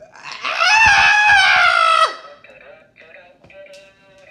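A person's loud, held scream of about two seconds that cuts off sharply, followed by a few faint short vocal sounds.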